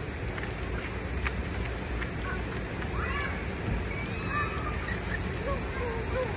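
Splash-pad sprinklers spraying water, a steady continuous hiss.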